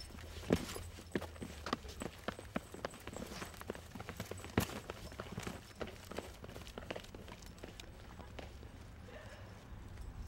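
Shoes stepping and scuffing on a concrete sidewalk during a scuffle: a quick, irregular run of sharp knocks and taps. The loudest knocks come about half a second in and just before the middle. The knocks thin out over the last few seconds.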